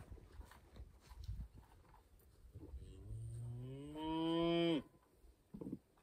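A cow moos once, a long call starting about three seconds in that rises in pitch and grows louder before it cuts off abruptly.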